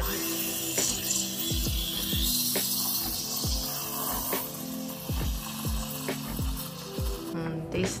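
Espresso machine steam wand hissing steadily as it froths milk in a stainless steel jug, cutting off about seven seconds in. Background music with a deep, regular beat plays throughout.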